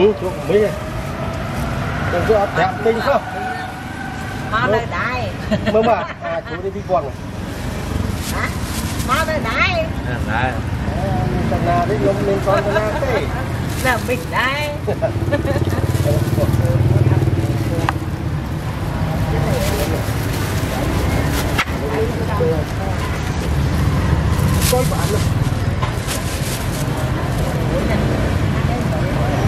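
Busy market ambience: people talking and calling in the background over a steady low rumble of traffic.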